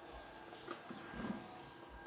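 Quiet background with faint steady tones and a couple of soft handling sounds as a car audio speaker is moved in the hand.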